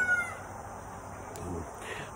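The end of a rooster's crow, a long held note that drops slightly and stops just after the start, followed by low outdoor background.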